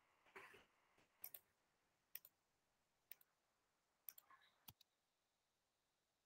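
Faint computer mouse clicks, mostly quick press-and-release pairs about once a second, stopping near five seconds in.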